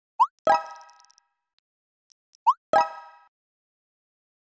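Two identical text-message sound effects about two seconds apart. Each is a quick rising swoop followed by a short ringing pop-like tone that fades within half a second, as messages are sent in a chat.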